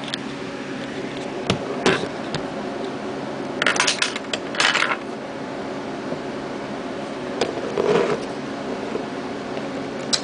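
Handling noise as a camera is moved and set down on a desk: a few sharp clicks in the first couple of seconds, then two short rustling scrapes around four to five seconds in, and a fainter one near eight seconds. Under it runs a steady fan-like hum.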